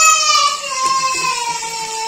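A child's voice holding one long sung note that slowly falls in pitch and fades, over a faint steady sizzle of chicken deep-frying in oil.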